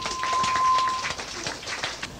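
Audience clapping and cheering between songs, with a steady high tone through the first second that then stops.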